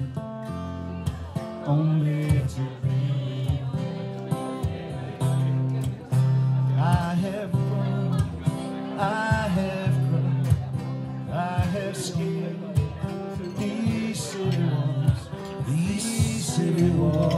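Two acoustic guitars playing a song together, with rhythmically strummed chords.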